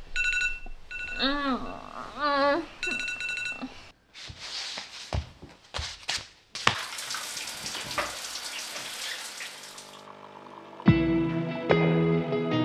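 A phone alarm ringtone beeping in short repeated bursts with warbling tones, then a few soft clicks and rustles, then water running steadily from a tap for about three seconds. Acoustic guitar music comes in near the end.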